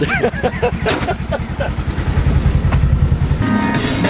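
Polaris General side-by-side UTV's engine running with a fast, even low throb, growing louder past the middle as it revs. A short laugh comes in about two seconds in, and music starts near the end.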